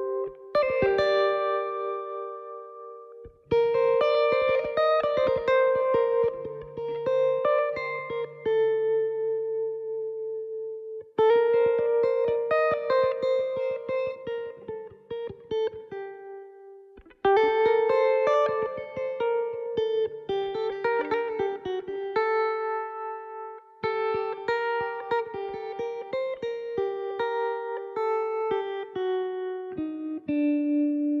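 Electric banjo picking a melodic instrumental introduction, joined by a second small plucked string instrument. The playing comes in phrases, each struck loudly and left to fade, about every six seconds.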